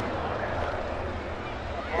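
Faint racetrack ambience: sprint car engines running low in the distance under a steady hiss, the revving having died away.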